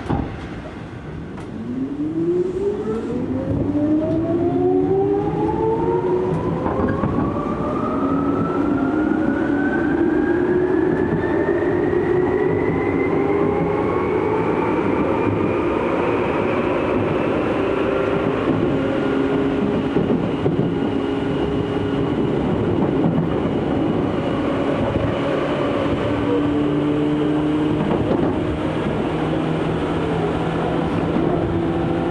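Tokyu 8500 series electric train pulling away from a station, heard from inside the car. The traction motor and gear whine rises steadily in pitch for about 16 seconds as the train accelerates, then holds level at running speed over the wheel and track rumble.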